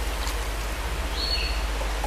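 Steady rushing, splashing water noise from the fish tub, with a faint short high chirp a little over a second in.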